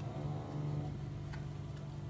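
A few faint clicks of oracle cards being sorted and fanned in the hands, over a steady low hum.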